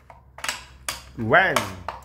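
A few sharp clicks and knocks of plastic toy track parts being handled at the launcher of a Hot Wheels loop track set, with a short vocal sound in the middle.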